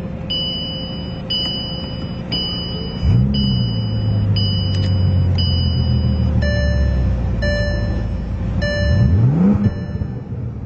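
Bentley Continental GT engine started with the push button. It catches about three seconds in with a rising rev flare, settles into a steady idle, and briefly revs up and back down near the end. A repeating electronic chime sounds about once a second throughout.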